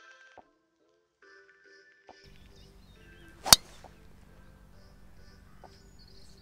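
A golf driver striking a ball off the tee: one sharp crack a little past halfway, by far the loudest sound.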